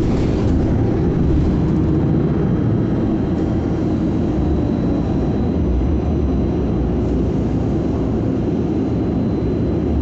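MBTA Silver Line articulated bus heard from inside the cabin while driving: a steady low engine and road rumble.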